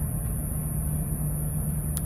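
Steady low hum and rumble of a power plant running, with a held low tone and a steady high hiss above it.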